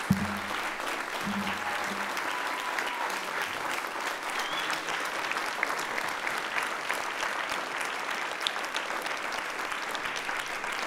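Sustained applause from a large audience giving a standing ovation, many hands clapping steadily throughout.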